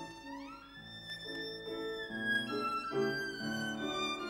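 Solo violin with piano accompaniment. About half a second in, the violin slides upward to a high held note over piano chords, then moves on through shorter notes.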